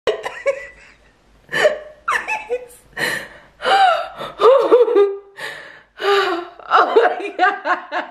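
A woman laughing hard in repeated bursts, catching her breath with gasps in between.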